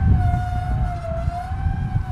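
Electric autonomous tool carrier (a Naïo Orio field robot) driving over soil, a steady high motor whine over a low rumble from the machine and its wheels.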